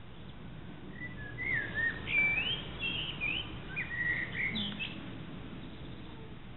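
A songbird singing a quick, varied phrase of high sliding whistled notes, starting about a second in and ending near the five-second mark, over a faint steady low background hum.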